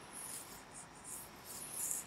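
Faint, irregular high-pitched scratching, in short uneven strokes, the loudest just before the end.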